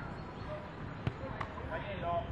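A football being struck: a sharp thump about a second in, followed shortly by a fainter knock.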